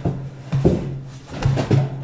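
A scuffle: a few sharp thumps and short grunts during a fight with a guard's baton, over a steady low music drone.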